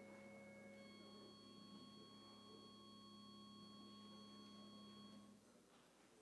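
Faint sustained church organ chord of pure, steady tones. The chord changes about a second in, is held, and is released about five seconds in.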